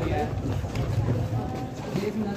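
Indistinct crowd voices, with a low rumble and scattered knocks from a handheld camera being jostled in a tight crowd.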